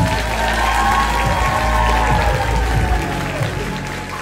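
Audience applauding while music plays on the concert hall's sound system, with sustained tones that arch slowly up and down.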